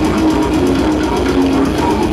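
Death metal band playing live through a PA: distorted guitars, rapid drumming and growled vocals, loud and unbroken.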